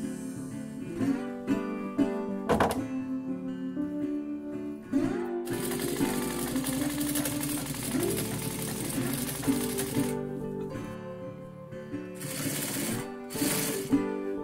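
Acoustic guitar background music. Over it, about five seconds in, an electric sewing machine runs for about four seconds, stitching fabric, then runs again in two short spurts near the end.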